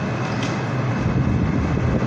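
Steady rumbling background noise with a faint low hum, with no voice.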